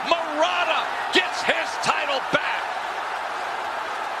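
Boxing arena crowd noise after a TKO stoppage: a steady roar of cheering, with excited shouting voices and several sharp bangs or claps in the first two and a half seconds, then only the even crowd roar.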